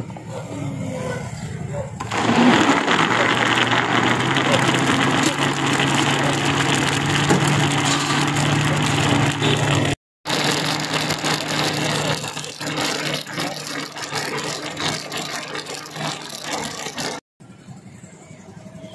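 Electric blender running, churning falsa berries into a pulp: the motor starts about two seconds in and runs with a steady hum, with two brief dropouts.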